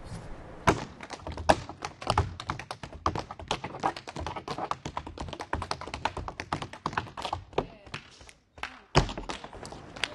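Tap shoes striking a wooden floor in a fast, uneven stream of sharp taps. The taps break off briefly about eight seconds in, then a hard stomp follows.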